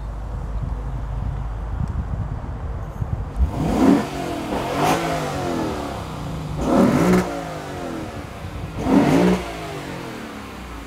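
2015 Lexus RC F's naturally aspirated 5.0-litre V8 idling, then revved three times, about four, seven and nine seconds in, each rev rising and falling in pitch.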